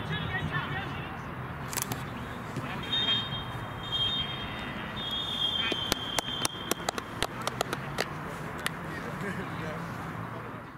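Referee's whistle blown for full time: two long, steady high blasts, about three and five seconds in. A run of sharp claps follows.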